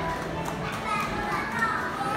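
Children's voices chattering and calling out at play, with music in the background.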